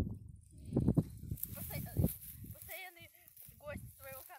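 Irregular low rumbling thumps on the phone microphone. In the second half comes a high-pitched wavering voice, unclear and seemingly at a distance.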